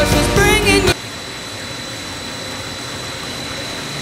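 A pop song with a woman singing cuts off about a second in. It gives way to the steady running noise of a steel-wire reinforced PVC hose extrusion line, an even machine hiss with a thin, steady high whine.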